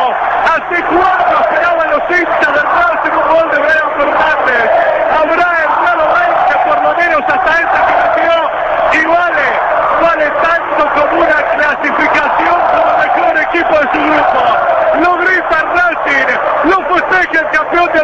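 Spanish-language radio football commentator's long, unbroken goal cry, one loud voice held with a wavering pitch and no pause.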